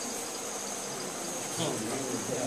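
Background of a hall between sentences: a steady high-pitched tone over a soft hiss, with a brief faint murmur of voices near the end.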